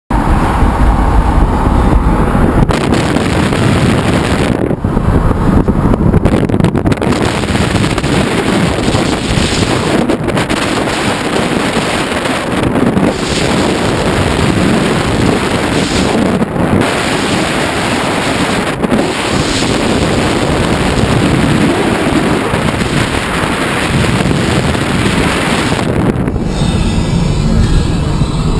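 Loud, continuous rush of wind and road noise from a van travelling at highway speed, buffeting the camera's microphone.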